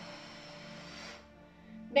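Soft background music with steady low tones. During the first second a breathy hiss, an audible out-breath, fades away.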